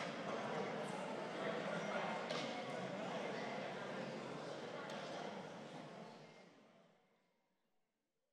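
Indistinct murmur of many people talking at once, with a few faint knocks, fading away to silence over the last two seconds.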